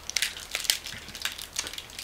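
Candy package crinkling and crackling in the hands as candy is pushed out of it, the way a pill is pushed out of a blister pack: a quick, uneven run of small crackles.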